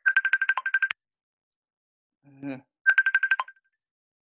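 A phone ringtone trilling in two short bursts, each under a second long: a rapid electronic warble of about a dozen pulses a second at one steady high pitch.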